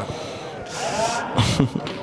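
A single sharp knock of a hand-pelota ball striking the hard court or wall, about one and a half seconds in, with a short bit of voice just before it.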